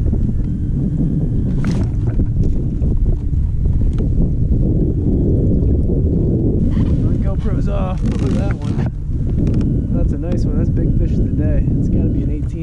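Wind buffeting the microphone: a heavy, steady low rumble across open water.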